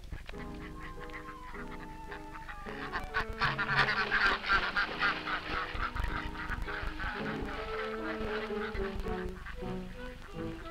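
A flock of domestic geese honking and cackling, loudest from about three to seven seconds in, over background music of held notes.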